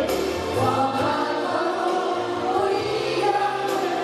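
A mixed group of men and women singing a song together in chorus into microphones, over instrumental accompaniment with held low bass notes.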